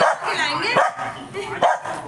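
Small pet dog whining and yapping in high, bending cries, with a sharp bark about one and a half seconds in. These are the sounds of a jealous dog while another dog is being petted.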